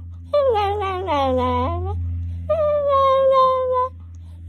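Small long-haired dog crying out in two long, high, drawn-out whines, the first wavering and dipping in pitch before rising again, the second held at a steady pitch.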